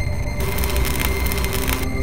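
Heavy, distorted rock music with a deep electric bass underneath. A harsh, crashing wash of noise comes in about half a second in and cuts off just before the end.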